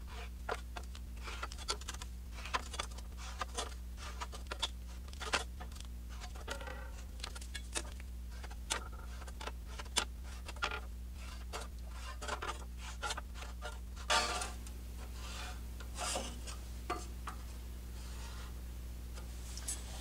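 Felt-tip marker scratching along a steel truck frame rail in short, irregular strokes, with light clicks of a metal straightedge against the rail, as the sections to be cut out are cross-hatched. A few longer strokes come near the end, over a steady low hum.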